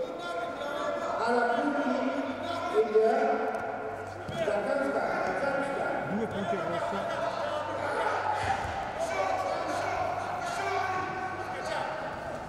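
Men's voices shouting during a Greco-Roman wrestling bout, with a few dull thumps of the wrestlers' bodies on the mat.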